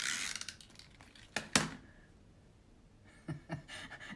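Paper and card being handled and pressed into place by hand: a brief rustle, then a few light clicks and taps about a second and a half in and again near the end.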